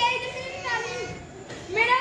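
Children's voices calling out in drawn-out, high-pitched calls, dipping in the middle and picking up loudly near the end.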